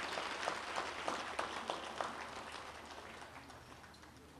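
Audience applause, a patter of many hand claps thinning out and fading away.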